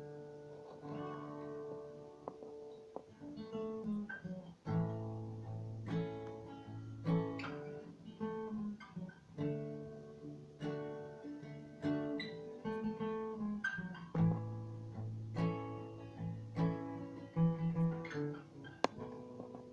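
Acoustic guitar played fingerstyle, picked notes ringing over a low bass note that comes in about five seconds in.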